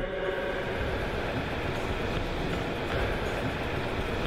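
A steady, even background rumble and hum with a few faint steady tones running through it, unchanging throughout.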